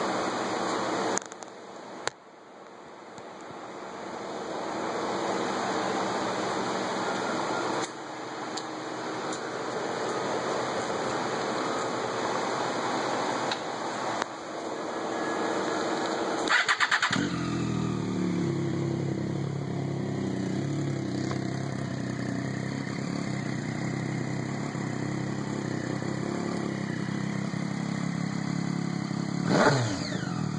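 A steady hiss for the first half. About halfway in, a Triumph Daytona 675's three-cylinder engine is cranked and catches with a short rapid burst, then settles into a steady idle through a custom low-mounted Scorpion silencer. A brief louder burst comes near the end.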